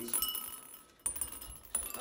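Skittles candies dropped by hand into clear glass cups, a scatter of small clicks and clinks against the glass.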